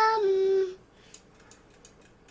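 A young child's drawn-out, hesitant 'ummm', held on one pitch and dipping slightly before it stops under a second in. After it, near silence with a few faint clicks.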